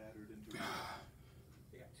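A man's forceful, gasp-like breath of exertion about half a second in as he works through a squat, over faint background talk.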